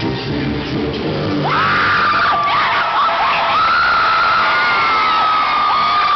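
Concert music in its last moments for about the first second and a half, then high, long screams from fans close by over a cheering arena crowd.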